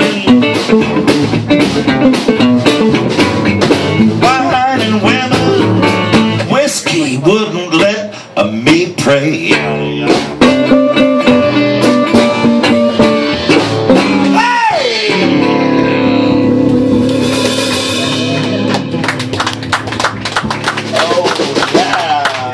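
Live blues band playing an instrumental passage: a resonator guitar fingerpicked over upright bass and electric guitar. Busy picked runs give way about two-thirds through to a sliding note and a held chord, and the picking starts again near the end.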